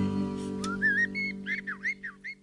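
The song's final chord rings out and fades while a songbird chirps a quick series of short whistled calls, starting about half a second in. The birdsong is part of the recording's ending.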